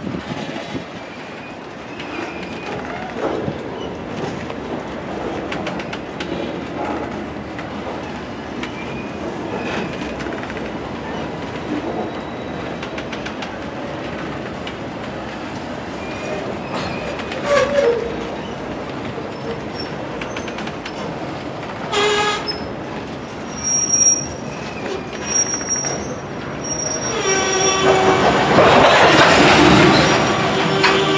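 Loaded CSX rock train of open hopper cars rolling past at track level: the steady noise of steel wheels on rail, with brief high metallic squeals now and then. A loud, sustained pitched tone comes in about three seconds before the end.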